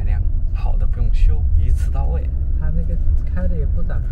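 Steady low rumble of engine and road noise inside a moving car's cabin, with a man's voice talking over it.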